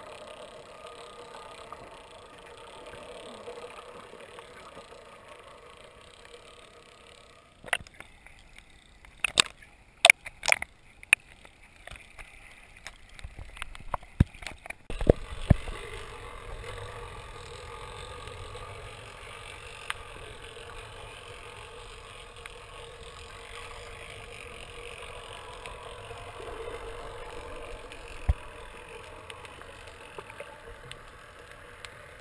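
Muffled water noise picked up by a camera underwater, a steady hiss with a cluster of sharp clicks and knocks about a third of the way in, followed by a low rumble for the rest.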